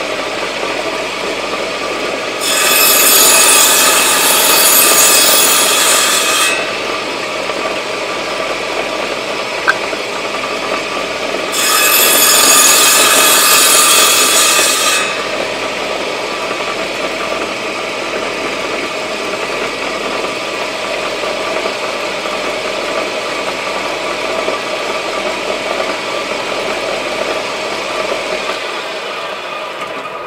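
Table saw running steadily, with its blade cutting into a small wooden workpiece twice; each cut is louder and hissier and lasts about four seconds. The motor is switched off and winds down near the end.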